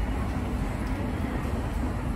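Subway-station escalator running, a steady low rumble heard while riding it down to the landing.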